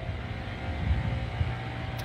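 A steady low background rumble with a faint steady hum, and no speech.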